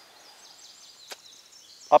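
Faint birdsong: a run of short, high chirps repeating in the background, with a single sharp click about halfway through.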